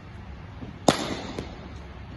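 Cricket ball struck by a bat, a single sharp crack about a second in that echoes around a large indoor hall, followed by a fainter knock about half a second later.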